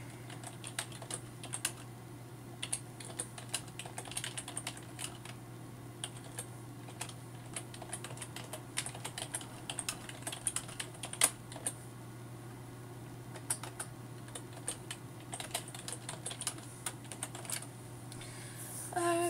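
Keystrokes on a computer keyboard as someone types a sentence: quick irregular runs of clicks broken by short pauses, over a steady low hum.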